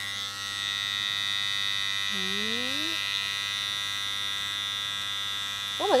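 Panasonic body trimmer running with a steady, even buzz as it is drawn through underarm hair.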